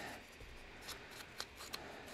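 Faint rustling of a thin strip of torn book-page paper being handled, with a few light clicks.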